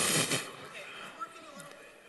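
A hard, breathy blow of air across the top of a toilet paper roll, close to the microphone, cutting off about half a second in. It is an attempt to lift the paper strip on the low-pressure airstream. Faint voices follow.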